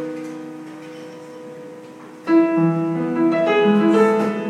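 Solo piano played live: a chord rings on and slowly fades. About two seconds in, a new chord is struck, followed by a few moving notes over it.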